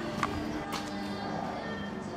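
Background music playing with steady held notes, and two short clicks in the first second.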